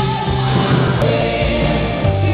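Live rock band playing with singing, heard loud through a camera's microphone in the hall. The music breaks off at an abrupt splice about a second in and carries on with a different passage.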